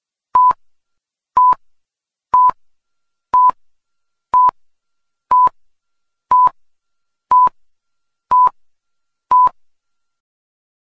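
Electronic timer beeping, ten short beeps of one steady tone a second apart, marking each second of the count.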